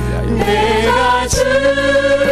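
Church worship team singing a slow praise song on the word '아버지' (Father), voices holding long notes over steady instrumental accompaniment. The pitch moves to a new held note about a second and a half in, with a percussive hit.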